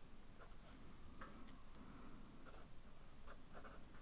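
Fine-tip pen writing on a lined paper notepad: faint, short pen strokes at irregular intervals.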